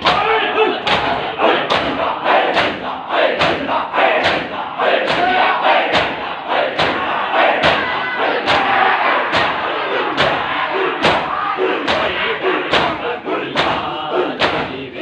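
Crowd of Shia mourners doing matam, beating their chests with open hands in unison: a sharp slap a little more than once a second, over many men's voices shouting together.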